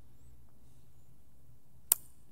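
Faint low hum of room tone, then a single sharp click near the end.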